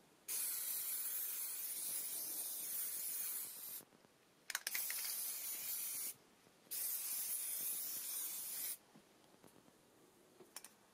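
Aerosol can of high-temperature stove paint spraying in three long bursts: one of about three and a half seconds, then two of about a second and a half and two seconds. A few quick clicks come just before the second burst.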